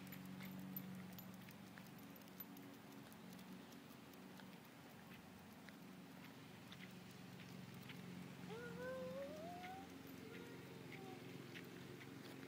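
Faint, steady hum of a distant lawn mower engine running. About eight and a half seconds in there is a short, rising, squeaky call.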